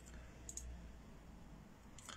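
Near silence with a low room hum, broken by a few faint short clicks, the clearest about half a second in.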